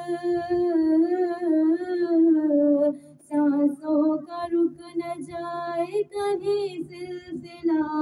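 A woman singing an unaccompanied Urdu Shia devotional chant into a microphone, with long held notes that waver in pitch. There is a brief break about three seconds in.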